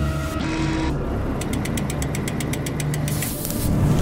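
Cinematic intro sound design: a low rumbling drone, with a rapid run of about eight ticks a second in the middle and a rising whoosh near the end.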